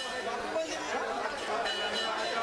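Crowd chatter: many people talking at once, with no one voice standing out.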